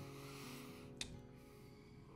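Faint background music with acoustic guitar, and a single short click about a second in.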